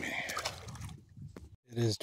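Short splash of water as a bluegill is dropped back into the pond by hand, fading within about half a second.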